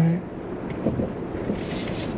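Steady cabin background noise inside a 2023 Lexus RX 350h, an even hiss with no engine note, with a brief brighter hiss near the end.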